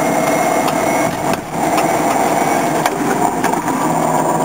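Electric drive motor of an 84-volt 1971 VW Beetle conversion whining steadily under heavy load on a very steep climb, drawing a lot of amps, heard from inside the cabin over road noise and a few clicks. The level dips briefly about a second and a half in.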